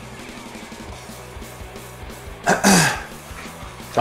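A man coughs once to clear his throat about two and a half seconds in, over quiet background music with steady low tones.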